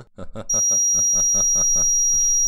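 Piercing high-pitched electronic tone, switched on about half a second in and held steady at one pitch, over a rapid pulsing stutter of about seven beats a second: a smart-home system's sound attack that makes a man clutch his head.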